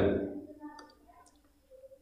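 A man's voice trailing off, then a pause that is almost silent apart from a few faint clicks.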